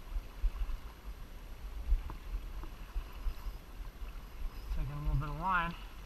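Steady rush of fast river current with a low wind rumble on the microphone. Near the end a man's voice rises in a short, wavering, wordless exclamation.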